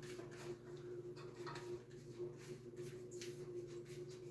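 Faint rustling and sliding of tarot cards pushed about by hand on a tabletop, a scatter of soft little scrapes and taps, over a steady low hum.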